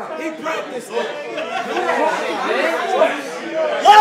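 Several men's voices talking over one another in indistinct chatter, with one voice louder and raised just at the end.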